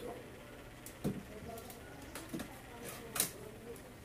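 A few sharp clicks and knocks, about a second apart, from a multimeter and its test leads being handled on a workbench.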